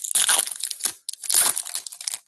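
Plastic wrapper of a 2024 Topps Big League baseball card pack being torn open and crinkled by hand, in two crackling stretches with a brief pause about a second in.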